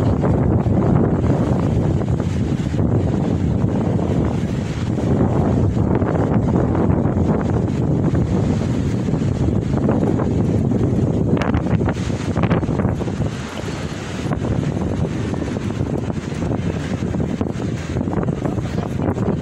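Wind buffeting the camera's microphone: a steady, loud low rumble that drowns out other sound, easing briefly about two-thirds of the way through.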